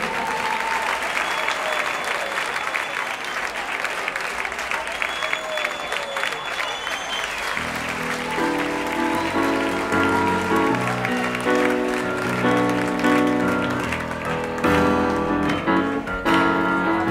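Live audience applauding. About halfway through, the song's instrumental introduction begins, led by piano, and the applause dies away under it.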